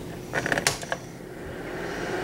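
Light clicks and crinkling from a sheet of nail wraps being handled, in a quick cluster about half a second in.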